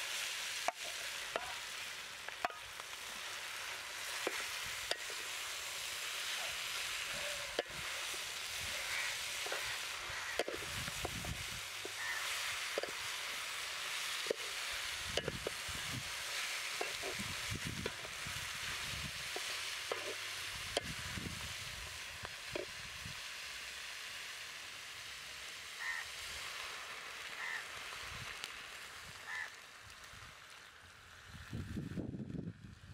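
Chicken and broad beans sizzling in a metal pot over a wood fire, a steady hiss, with the slotted spatula scraping and knocking against the pot as the pieces are stirred.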